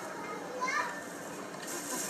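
Background voices in a room, among them children's, with one short faint call about half a second in over a steady hiss.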